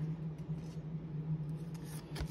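Baseball trading cards being slid off the top of a hand-held stack and tucked to the back, a faint rubbing with a few soft clicks, over a steady low hum.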